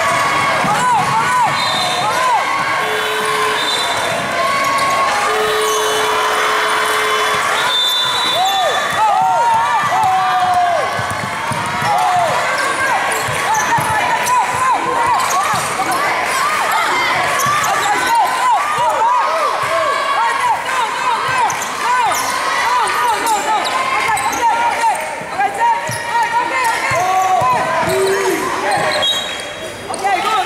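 Basketball game on an indoor hardwood court: the ball bouncing and many short, quick sneaker squeaks, with a steady background of spectators' voices.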